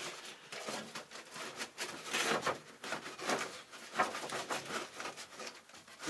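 Foil-faced insulation sheet crinkling and rustling as it is fed down between wooden boards and a fiberglass hull, in irregular crackles with a few louder bursts in the middle.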